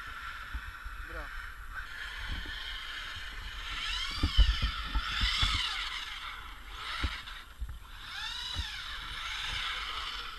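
Electric RC truck motors whining as several Traxxas trucks drive on ice. The pitch sweeps up and down twice as the trucks speed up and slow. A few low thumps are mixed in, loudest about four and a half seconds in.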